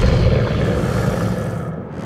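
A deep low rumble, a cinematic sound effect, fading down and dipping briefly near the end.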